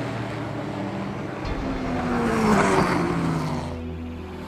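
Road traffic: cars driving past, their engine notes falling as they go by, with tyre and road noise swelling and fading near the middle.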